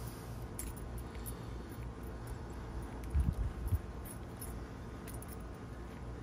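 Small metallic clinks and handling noise as wiring and hold-down clips are fitted onto a Subaru CVT valve body by hand, with a short cluster of low knocks a little past halfway.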